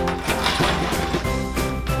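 Background music playing, with light clicks of a plastic VHS tape case being handled and opened.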